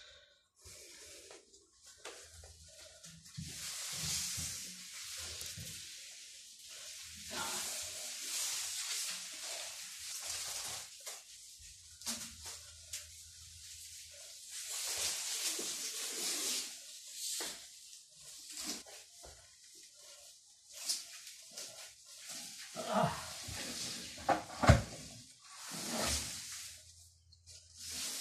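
A man breathing hard in long, breathy gusts from the strain of carrying a very heavy plant pot, with shuffling and light knocks as he moves it, and one sharp knock near the end.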